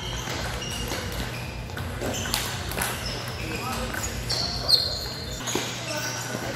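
Table tennis hall: ping-pong balls clicking off bats and tables, irregular and overlapping from several tables, over a steady murmur of players' voices. Short high squeaks come and go, and one sharp louder knock falls near the end.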